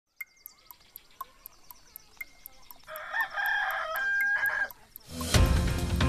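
A clock ticking about four times a second, then a rooster crowing for a little under two seconds, then music starting loudly near the end.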